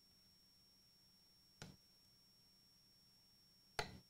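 Two short knocks of a knife against a wooden cutting board while a porterhouse steak is carved off the bone, the second louder, about two seconds apart, in an otherwise near-silent room.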